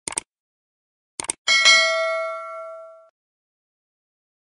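Subscribe-button animation sound effect: a quick double mouse click, then another double click about a second later followed at once by a bell ding that rings out for about a second and a half.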